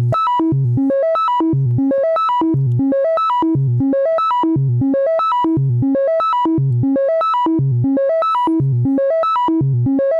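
Doepfer A111-1 VCO sine wave through an A120 low-pass filter, playing a quantized sequencer pattern. Short stepped notes run up and down over several octaves, the figure repeating about once a second. The pitches land in tune because the exponential CV input has a volt-per-octave response.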